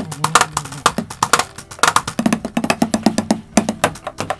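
Roland electronic drum kit played with sticks in a busy drum pattern, several sharp hits a second with bright cymbal-like strikes and lower drum notes through the middle.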